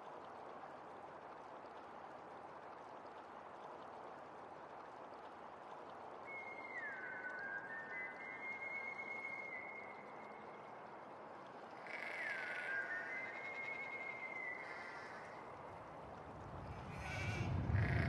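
Faint, steady outdoor ambience with sheep bleating a few times, in long drawn-out calls that first slide down in pitch. A low rumble swells near the end.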